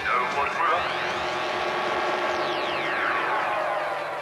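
A sustained buzzing drone put through a sweeping flanger-like effect: its sheen rises over the first two seconds and then falls back.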